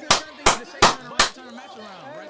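Four sharp hand claps in quick, even succession, about three a second, with faint voices underneath.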